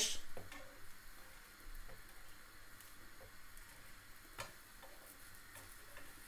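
Aubergine slices frying in a little oil on a ridged griddle pan: a faint, steady sizzle, with a few light clicks of metal tongs, the sharpest about four and a half seconds in.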